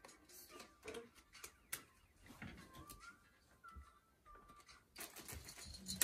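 Near silence in a small room, with faint clicks of playing cards being handled and, in the last second, a rustle as a hand goes into a plastic bag of plastic train pieces.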